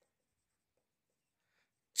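Faint strokes of a marker writing on a whiteboard.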